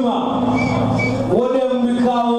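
A man's voice chanting in long, drawn-out held notes: one phrase ends about one and a half seconds in and the next begins with a rise in pitch.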